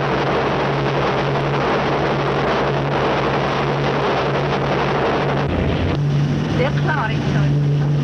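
Steady drone of the Graf Zeppelin airship's engines, a constant low hum under a loud rushing noise on an old film soundtrack. A voice faintly joins in about a second and a half before the end.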